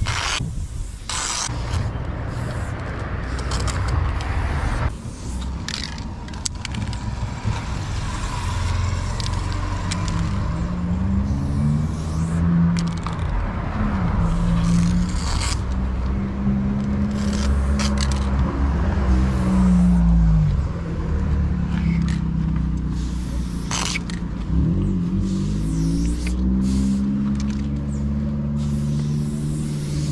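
Aerosol spray-paint can hissing in many short strokes as outline lines are sprayed onto a rough wall, over a continuous low rumble whose pitch wavers up and down.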